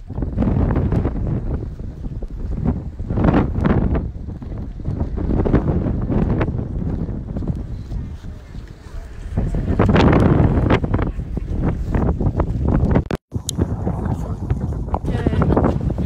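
Strong wind buffeting a phone's microphone, gusting up and down in loud, rough rushes. The sound cuts out completely for a moment about thirteen seconds in.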